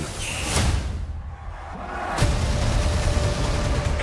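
Dramatic trailer-style soundtrack between voice-over lines: a whoosh about half a second in, then a deep boom about two seconds in that leaves a low rumble under a faint held tone.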